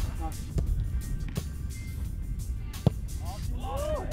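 A soccer ball kicked three times in a training passing drill, sharp knocks over a steady low rumble, the last and loudest near the end. Background music plays under it, and a voice calls out shortly before the end.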